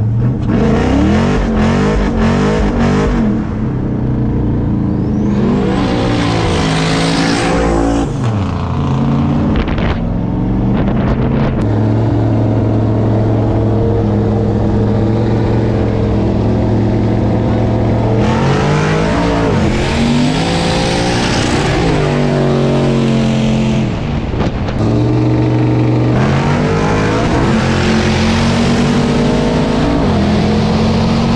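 Corvette C7 Stingray's V8, with headers and a manual gearbox, accelerating hard. The revs climb and drop at several upshifts, hold steady through a stretch of cruising, then pull hard again with more shifts from about 18 seconds in.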